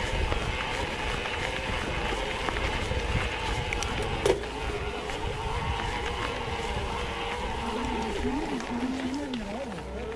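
Mountain bike climbing a gravel track: tyres crunching over loose gravel with wind rumbling on the camera microphone and a faint steady whine underneath. A sharp knock comes about four seconds in.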